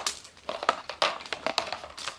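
Heavy-duty plastic hose reel being turned by hand to unwind a water hose: a run of irregular sharp plastic clicks and knocks.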